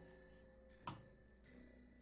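Near silence with a faint steady background tone, broken by a single soft click a little under a second in.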